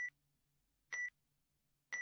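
Countdown-timer sound effect: a short, high electronic beep about once a second, marking the seconds of the guessing time.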